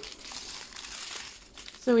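Soft crinkling of small clear plastic bags of diamond-painting drills being handled.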